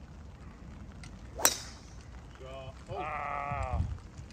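Golf driver striking a teed ball: one sharp crack about a second and a half in. Near the end come two drawn-out, wavering vocal sounds, the second longer.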